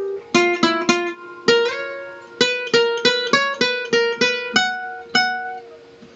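Nylon-string guitar playing a fast requinto lead line of single plucked notes and a few two-note stops, each note ringing and fading. A quick flurry of notes is followed by a brief pause, then a steady run of about three notes a second, with the last notes left to ring out near the end.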